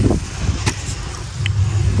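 A steady low outdoor rumble, with one sharp knock about two-thirds of a second in as a metal digging blade is worked into the soil of a rat burrow.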